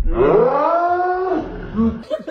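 A person lets out one long, drawn-out yell that rises in pitch and then holds for about a second and a half, followed by a short, lower vocal sound near the end.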